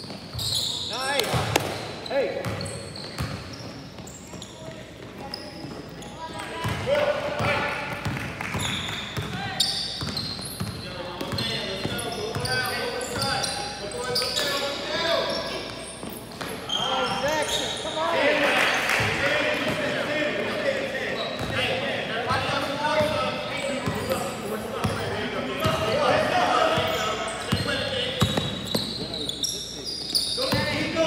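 Basketball game in a gym: a basketball bouncing on the hardwood court over players' footsteps and indistinct shouting voices, echoing in the large hall.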